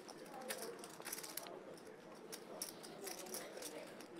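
Poker chips clicking as a player shuffles them at the table: a quick, irregular run of light clicks.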